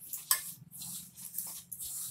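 A hand rubbing and mixing dry flour and oil in a steel bowl, fingers brushing and scraping against the metal in a series of short, rasping strokes. This is oil being rubbed into the flour for mathri dough.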